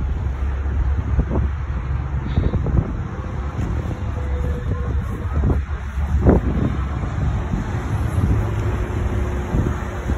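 Wind rumbling on a handheld phone's microphone outdoors, with a few short knocks scattered through, the loudest about six seconds in.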